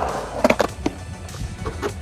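Skateboard wheels rolling on concrete, with a few sharp clacks of the board about half a second in.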